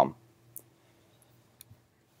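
Faint sharp clicks at a laptop: one about half a second in and two more, fainter, just past a second and a half, over a low steady hum.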